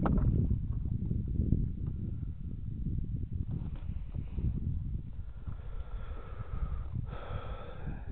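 Wind buffeting the microphone, a low uneven rumble. A faint steady whine joins about five seconds in.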